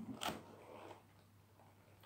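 Near silence in a small room, broken by one brief soft hiss about a quarter second in.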